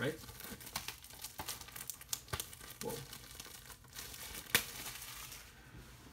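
Plastic shrink-wrap on a Blu-ray case crinkling and tearing as it is pulled off, in a run of short sharp crackles with one louder snap about four and a half seconds in.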